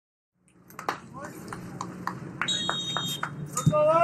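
Referee's whistle, a short high steady blast about two and a half seconds in, over a low hum and scattered clicks from a soccer livestream's field audio; a man's voice starts near the end.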